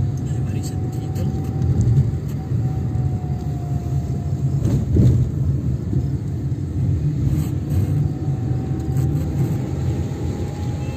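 Car cabin noise while driving: a steady low engine and road rumble with a faint thin whine, and a single thump about five seconds in.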